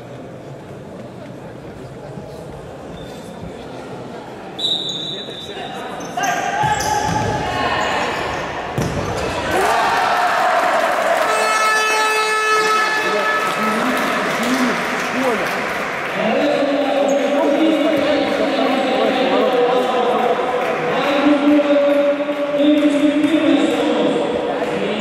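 Futsal ball kicks and bounces on a wooden sports-hall floor, with players' and spectators' shouting voices echoing in the large hall. It is quieter for the first few seconds, then grows busier and louder from about five seconds in.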